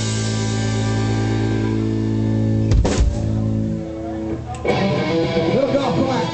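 Live rock band's electric guitars holding a final chord that rings out, with a single drum hit about three seconds in. The chord fades near four seconds, then loose guitar playing and voices start up.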